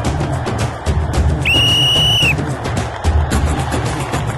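A referee's whistle blows once, a steady high blast about a second long, marking the end of a kabaddi raid as points are scored. It sounds over background music with a steady beat.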